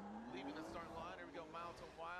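Faint engine of a drift car revving, its pitch rising steadily through the first second, heard quietly in the broadcast's own audio with faint voices under it.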